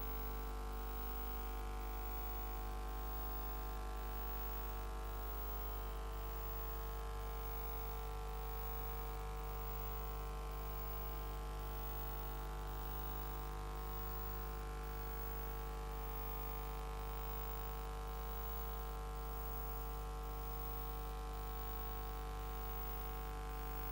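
Steady electrical mains hum, a low buzz with many overtones and a faint hiss underneath, unchanging throughout.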